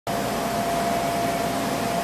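Steady hum of a room's air conditioning, with a constant mid-pitched tone running through it.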